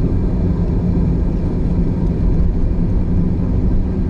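Audi A6's 2.8-litre V6 engine and road noise heard inside the cabin while cruising at a steady speed: an even low drone with a steady hum and no change in revs.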